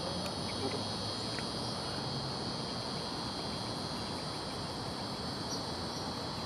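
A steady, high-pitched insect chorus that holds unchanged throughout, over a soft outdoor background hiss.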